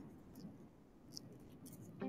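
Near silence: room tone with a few faint, brief clicks.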